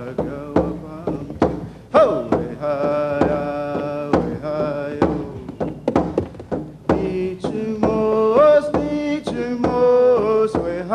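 Men singing a chant-like song over a steady hand-drum beat, about two beats a second; the voice swoops up about two seconds in.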